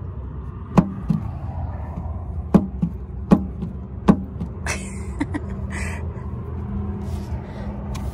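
A handful of sharp, separate knocks and clicks against the RV's metal entry step as a hand works the ribbed rubber tread and its compartment into place, followed by a short scrape or two.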